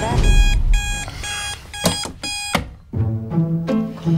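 Digital alarm clock beeping in short, evenly pitched bursts, repeated several times over a deep boom for the first two and a half seconds or so. Low, slow music notes come in about three seconds in.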